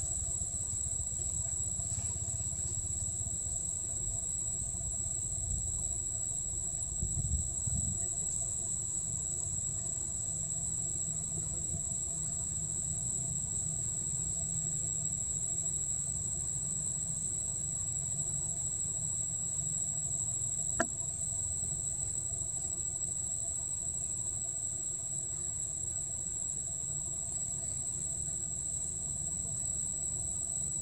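Steady, unbroken high-pitched insect chorus over a low rumble, with a single sharp click about two-thirds of the way through.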